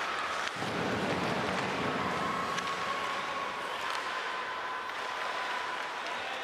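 Ice hockey arena ambience during play: an even hiss of crowd and skating noise with no commentary, joined from about two seconds in by a faint steady held tone.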